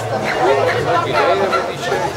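Voices of a crowd, several people talking at once.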